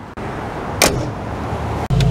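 Mercedes-AMG G63's twin-turbo 4.0-litre V8 running at idle with the hood open, a steady low hum under a noisy hiss. A single brief, sharp sound cuts through a little under a second in.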